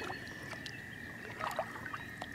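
A distant chorus of spring frogs making a steady, unbroken high trill, with a few short chirps from birds about one and a half seconds in.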